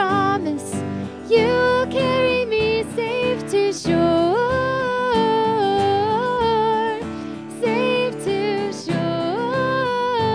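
A woman singing a worship song into a microphone over strummed acoustic guitar, with long held notes in the second half.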